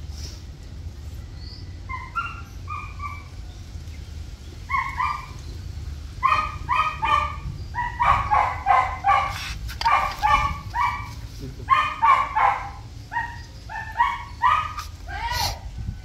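Small dog giving short high-pitched yelps in quick runs while it is held down and its ticks are picked off. The cries begin about two seconds in and grow more frequent from about six seconds on.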